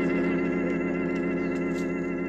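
Background music: one held organ-like synthesizer chord, steady and slowly fading.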